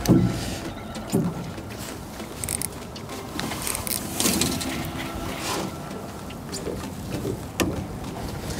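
Small electric trolling motor on a jon boat running with a steady whine.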